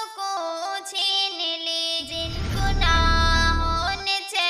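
A solo voice singing long, wordless held notes of a devotional nazam. About halfway through, a deep rumbling swell joins the voice and cuts off suddenly at the end.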